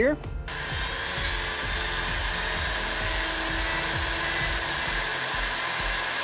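Flex-shaft rotary tool spinning a small carving burr into the corners of a carved wooden block: a steady whirring grind that starts about half a second in and holds level.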